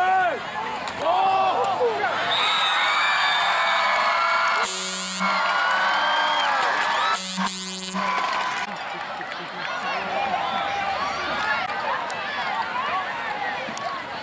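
Football crowd cheering and yelling after a play, many voices swelling into a sustained roar, cut by two short loud blasts about five and seven and a half seconds in, then settling back to crowd chatter.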